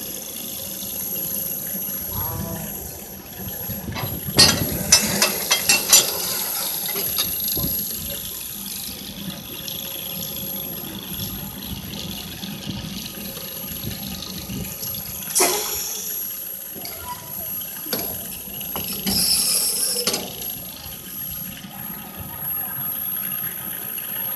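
A slow amusement-park rail ride in motion: a steady noisy rumble with a constant high whine. A quick cluster of clicks and knocks comes about four to six seconds in, with another sharp knock about midway.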